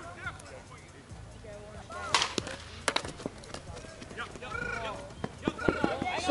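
Slowpitch softball bat striking the ball with a sharp crack about two seconds in, followed by further short sharp knocks, over distant shouting from the field.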